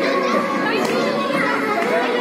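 A crowd of schoolgirls talking and calling out all at once: a dense, steady babble of many overlapping children's voices.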